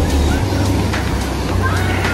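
Ocean surf washing and breaking in the shallows, under background music with a steady beat and a voice.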